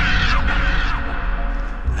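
Low, throbbing drone of a dark film score or sound design, slowly fading, with a wavering higher tone that dies away in the first half second.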